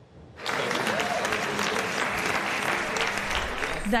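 Audience applauding, starting about half a second in and going on steadily.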